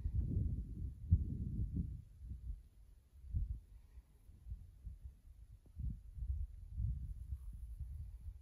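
Wind buffeting the microphone: irregular low rumbling gusts with dull thumps, strongest in the first two seconds.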